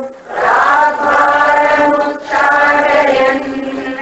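A woman's voice chanting Sanskrit verse in a slow, melodic recitation, holding long notes in two phrases with a brief break about two seconds in.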